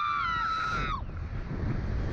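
A woman's long, high scream on a slingshot ride's launch, holding one pitch and cutting off about a second in. Wind then rushes over the microphone as the capsule flies.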